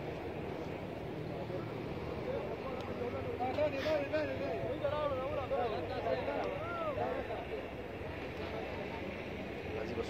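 Faint, distant voices of people on the field calling and talking, over a steady low background noise.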